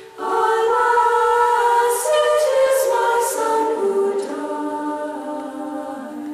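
Women's choir of Benedictine nuns singing a hymn a cappella in several-part harmony. A new sustained phrase begins just after the start and fades toward the end.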